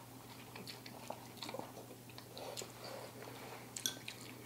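Faint chewing and slurping of instant ramen noodles, with small wet mouth sounds and a few light clicks.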